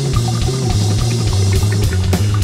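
Instrumental psychedelic rock band playing: electric guitar, bass guitar and drum kit, a sustained bass line stepping between notes under cymbals and drum hits.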